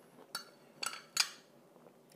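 A metal spoon clinking against a glass dessert dish: three short, slightly ringing clinks within about a second.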